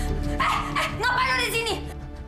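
A woman crying out in fright, short high-pitched cries, over steady dramatic background music.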